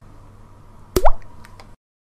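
A single short sound-effect pop about a second in, a sharp click with a quickly rising pitch, over faint tape hiss, followed by a couple of faint ticks; the sound cuts off suddenly near the end.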